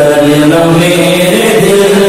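A man's voice singing an Urdu naat in a chant-like devotional style, holding long notes that bend slowly in pitch.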